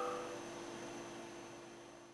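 A faint steady hum that fades out evenly to silence.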